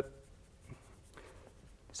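Chalk writing on a blackboard: faint scratches and taps.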